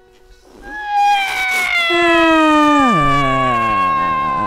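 Freely improvised music. After a near-quiet first half second, several sliding pitched tones come in. One falls steadily in pitch and settles into a low tone about three seconds in, while a high tone is held above it.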